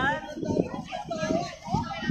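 Voices talking nearby, some of them high-pitched children's voices, with no clear words.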